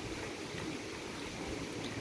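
Faint, steady background hiss with no distinct sound event.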